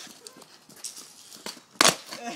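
Skateboard on concrete: faint knocks from the board and wheels, then one loud sharp clack near the end as the board strikes the ground.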